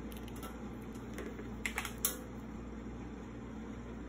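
Light clicks and taps from a white wired earphone cable being handled and moved across the desk: about five in the first half, the last the sharpest, over a steady low hum.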